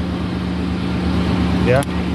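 A Chevrolet Aveo running with a steady hum and a constant low tone, its electrics working again after a repaired short circuit.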